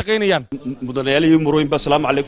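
Speech only: a man speaking into a microphone, and about half a second in an edit cut switches to another man speaking in a lower, even voice.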